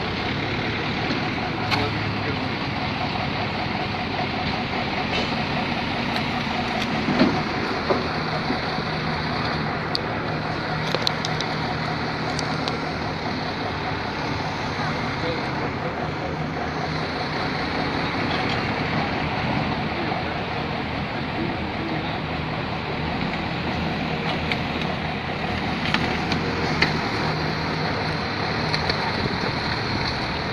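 Vehicle engines running, with a steady low hum setting in a few seconds in, over a constant rush of street and outdoor noise. Indistinct voices run underneath.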